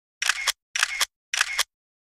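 Film-countdown intro sound effect: three short mechanical clicking bursts, each about a third of a second long and roughly half a second apart.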